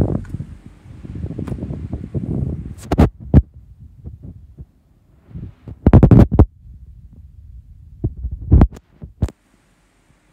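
Airflow from running 16-inch plastic pedestal fans buffeting the microphone: a loud low rumble for the first couple of seconds, then a handful of separate loud thumps in quieter stretches, the strongest about six seconds in.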